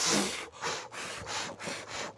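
A man blowing out birthday cake candles, a quick string of about six short, hard puffs of breath.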